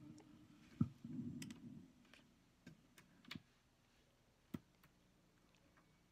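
Faint, scattered clicks, about seven over several seconds, from the buttons and cassette deck of a karaoke machine being worked to switch it over to tape.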